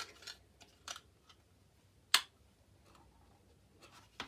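Small clicks and taps from handling a little card box and craft pieces, with one sharp click a little after two seconds in.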